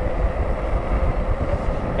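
Wind buffeting the microphone, a heavy, fluttering low rumble, mixed with road noise from an e-bike riding on pavement at about 20 mph.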